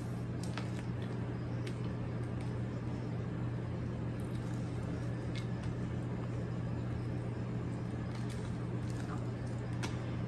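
A steady low hum under faint, scattered soft taps and scrapes: a rubber spatula spreading thick, creamy filling into a crumb crust.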